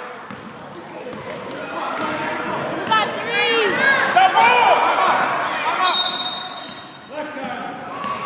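Basketball game in a gymnasium: sneakers squeak on the hardwood floor in quick arching chirps as players run and cut, with the ball bouncing and spectators' voices echoing around the hall.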